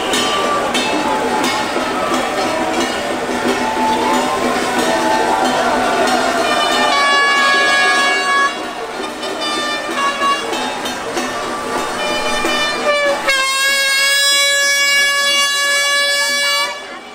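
Firecrackers crackling over crowd noise. From about halfway, horn-like tones sound. Near the end a long, steady, single-pitch horn blast lasts about three seconds.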